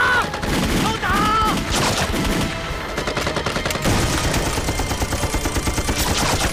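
Dense rifle and machine-gun fire in a film battle, with a fast, even run of shots over the last second or so.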